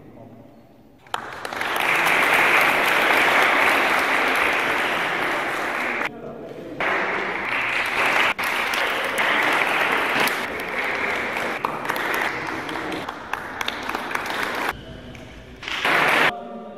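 Audience applauding, starting about a second in, dropping off briefly near the middle, then picking up again and dying away near the end.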